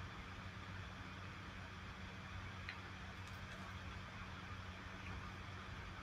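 Quiet room tone: a faint steady low hum and hiss, with two faint ticks about halfway through.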